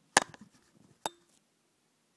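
Two sharp knocks from a handheld recording device being handled and set in position, the first the loudest and the second, about a second in, with a short ring after it.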